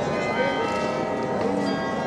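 Several church bells ringing, struck one after another so that their tones overlap and linger.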